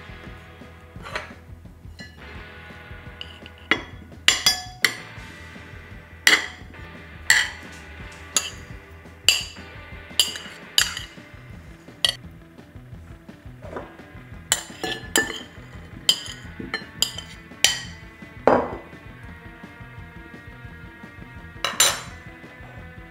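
Kitchenware clinking as a salad is assembled: a dozen or so short, sharp clinks at irregular intervals, some with a brief ring, over background music.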